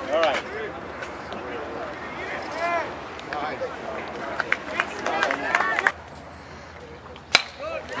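Players and spectators calling out across the ballfield throughout. About seven seconds in comes a single sharp crack of a bat striking the ball.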